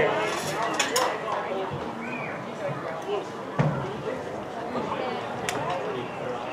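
Indistinct chatter of several spectators' voices, with a knock about three and a half seconds in and a sharp click near the end.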